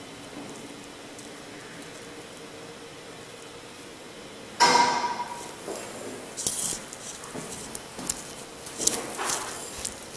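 Hydraulic elevator car running down with a low, steady hum. About halfway through there is a sudden loud clank with a brief ringing tone, followed by scattered knocks and rattles.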